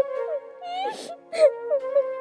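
A woman sobbing and whimpering in short, wavering cries with sharp breaths in between, over sad background music with steady held notes.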